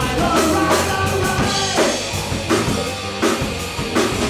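A three-piece rock band playing live: electric guitar, bass guitar and drum kit together in an up-tempo rock and roll song.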